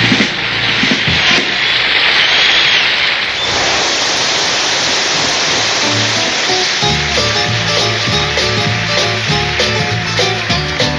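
Country music recording: a dense hiss-like wash of noise with a brief gliding tone fills the first three seconds or so. A band instrumental then takes over, with bass and guitar notes coming in clearly from about six seconds.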